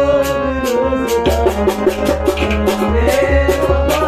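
A Kashmiri song played on a harmonium, with its held reed chords over a steady drum beat; a man's singing voice wavers over it in the first second.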